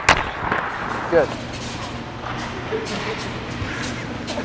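One sharp crack right at the start, followed by the steady low hum of a small electric utility cart driving along.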